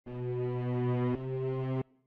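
A low, buzzy sustained tone rich in overtones, an electronic intro sting. It is struck again about a second in, then cuts off sharply just before the end.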